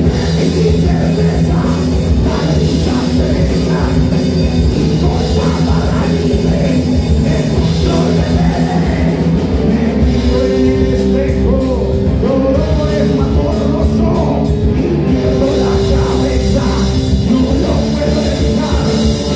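Rock band playing live: electric guitars, electric bass and a drum kit, loud and steady, with a long note held twice around the middle.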